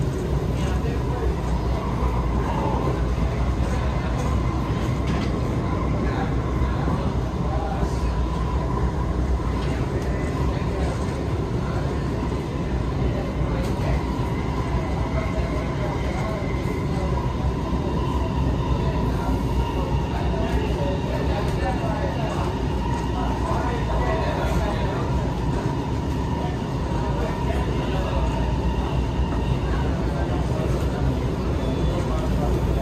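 Alstom Movia R151 metro train running at steady speed, heard from inside the car: a continuous low rumble of wheels on rail with a steady whine from the electric drive above it.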